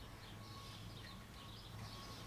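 Faint, irregular scratching of a depth scribe's point, a bent dental pick set in a small wooden block, drawn along the side of a wooden rifle forearm to cut a checkering side line, over a low steady hum.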